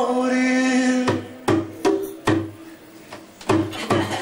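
Live rock band playing in a small room: a long held note ends about a second in, followed by a loose run of separate drum hits with quieter stretches between them.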